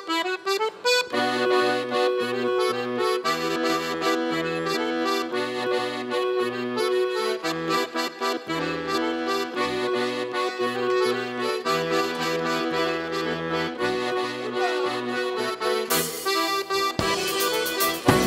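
Organetto (Italian diatonic button accordion) playing a traditional folk tune: a melody over bass notes that step up and down in time. Near the end a loud, noisy rush of sound joins it.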